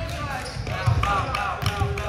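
Sneakers squeaking on a hardwood gym floor, several short squeaks about a second in, amid dull thumps of feet and ball and the indistinct voices of players.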